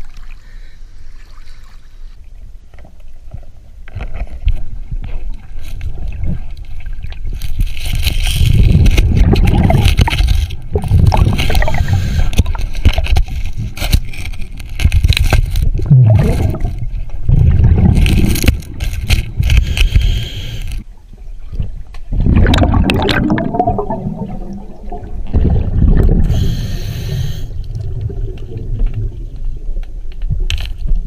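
Scuba breathing heard underwater: a hiss through the regulator on each inhalation and bubbling bursts of exhaled air, recurring every several seconds. The first few seconds are quieter water sloshing.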